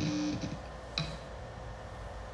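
Two short clicks about a second apart, the first with a brief ringing tail of about half a second.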